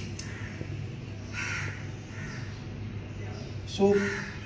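A bird calling a couple of times, about one and a half and two seconds in, over a steady low hum.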